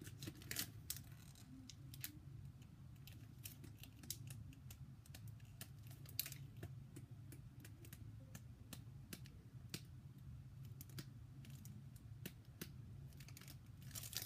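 Faint, irregular clicks and light rustles of Pokémon trading cards being slid one behind another by hand as a freshly opened booster pack is flipped through.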